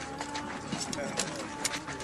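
Film soundtrack: a held, steady music note under faint voices and scattered light clicks and clinks.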